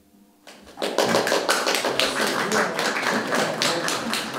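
Audience applauding, breaking out about a second in after a brief hush and carrying on as a dense run of claps.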